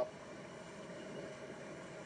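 Steady background hiss with no distinct events in it, in a pause between spoken phrases.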